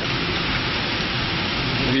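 Sheets of paper being handled and leafed through, giving a continuous, even rustling hiss.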